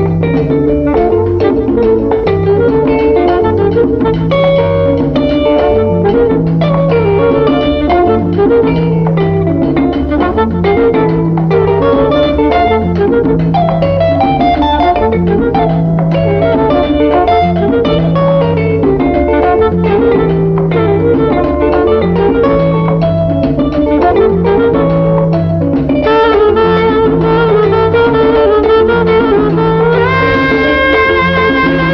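Instrumental break of an Afro-Cuban salsa band recording, with no singing: a repeating bass line under a dense weave of pitched instruments and percussion. It grows fuller about four seconds before the end.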